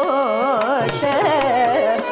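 Carnatic classical singing: a woman's voice sweeping through wide, wavering pitch ornaments (gamakas), with violin accompaniment and regular mridangam strokes underneath.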